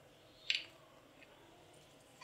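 Near silence, broken once about half a second in by a brief soft rustle, with a faint tick a little after a second in.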